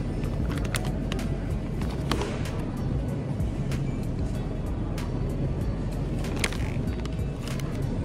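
Crinkling and clicking of a clear plastic snack-sausage bag being handled, as scattered sharp crackles. Under it runs steady store background noise with faint music.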